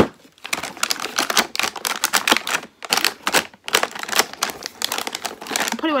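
Plastic feeding bottles and sealed teats being handled and packed back into a cardboard box: a busy run of small clicks, taps and plastic crinkles, with a few brief pauses.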